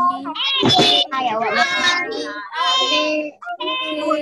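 Young children singing in high voices, with drawn-out notes and a short break about three seconds in, heard over a video call.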